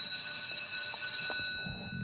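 A steady, high-pitched buzzer or alarm tone with overtones, held at one pitch for about two seconds and cutting off near the end.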